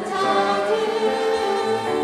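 A choir of young children and adults singing a Korean worship song together.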